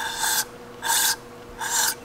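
Aerosol cleaner sprayed through a straw into an Espar D5 diesel heater's burner tube in short hissing bursts: one ends about half a second in and two more follow, flushing out black soot and half-burned diesel.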